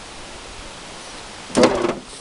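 Steady outdoor background hiss, then a short, loud burst of sound about a second and a half in.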